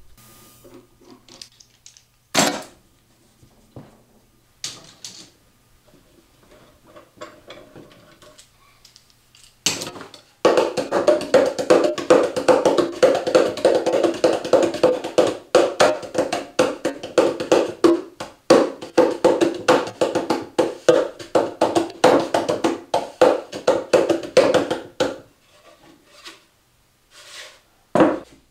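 A few clunks and knocks of metal bar clamps being loosened and lifted off, then hands drumming rapid strikes on the top of a Meinl bongo cajon, a wooden box drum, for about fifteen seconds.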